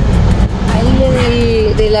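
Kia Sorento's engine idling, a steady low rumble heard from inside the cabin, under a woman's drawn-out hesitating "eh".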